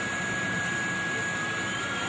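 Steady hiss of a public-address sound system during a pause in the talk, with a thin, steady high tone held throughout.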